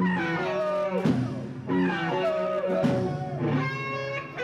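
Live hard rock band playing, with an electric guitar lead of bending, wavering notes over bass and drums.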